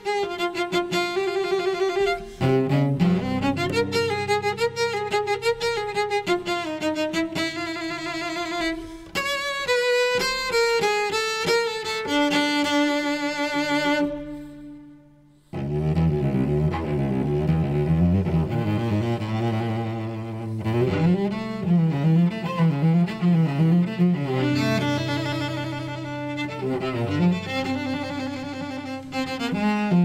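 Solo cello played with the bow: a flowing line of sustained notes with vibrato. About halfway through the sound dies away for a moment, then the playing resumes in a lower register.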